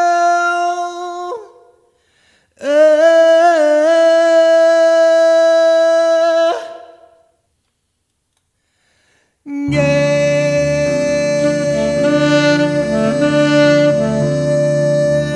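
A male singer holds two long unaccompanied notes, each a few seconds long with a short pause between them, the second with a small turn in pitch near its start. About ten seconds in, keyboard chords and a saxophone come in together and play on.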